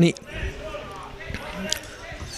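Faint open-air sound of a football pitch, with a few short dull thuds of a football being kicked.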